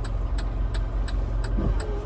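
Truck engine idling in the cab, a steady low rumble, with a turn signal ticking about three times a second. A short voiced sound comes near the end.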